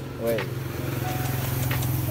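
A motorcycle engine running steadily with a low, evenly pulsing drone that grows slightly louder, with a short shout of "woi" at the start.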